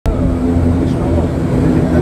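Steady drone of an airliner's engines and propellers heard inside the cabin while taxiing, a low hum with several steady tones.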